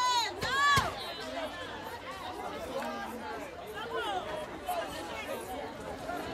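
A crowd of people talking and calling out over one another, with two loud, high-pitched shouts in the first second.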